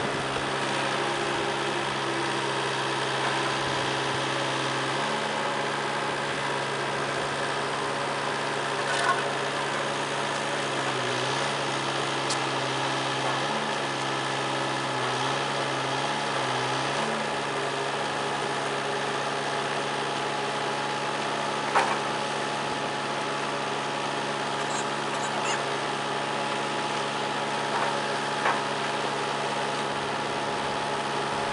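Farm machinery engines running at a steady idle, their speed dipping and rising a few times around the middle. A few sharp knocks come through now and then.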